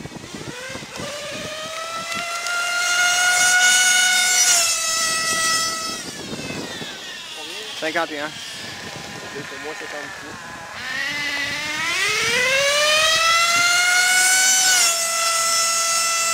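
Modified O.S. .28 nitro engine in an RC car screaming at full throttle on two passes. On each pass the pitch climbs steadily, steps down a little and holds. The second pass starts from low revs about eleven seconds in, after a short lull in which a voice calls out a number.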